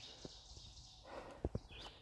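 A few faint, short knocks against a quiet outdoor background: handling noise.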